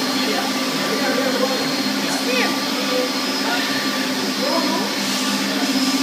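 Steady drone of electric woodworking machinery in an olive wood carving workshop: a low hum with a faint high whine, under a haze of motor and air noise.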